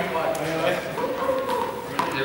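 Several people talking at once in a large, echoing sports hall, with a few faint knocks.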